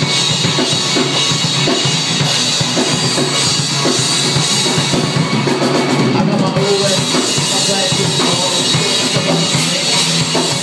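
Live rock band playing: a drum kit with kick and snare driving the beat under electric guitars, loud and steady.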